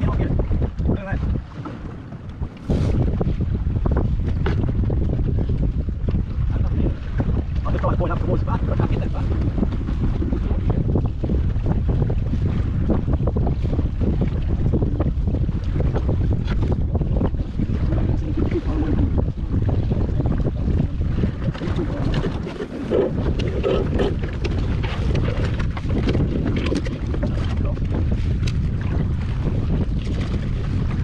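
Wind buffeting the microphone over water rushing and splashing along the hull of a small wooden sailing dinghy under way. It is a steady, heavy rumble that is a little quieter for the first couple of seconds.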